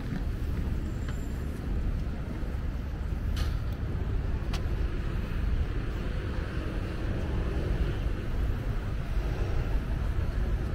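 Steady city street ambience dominated by the low rumble of road traffic, with two brief sharp clicks a few seconds in.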